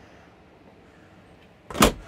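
Quiet room tone, then near the end a single thud as a motorhome's tall slimline refrigerator door is pushed shut.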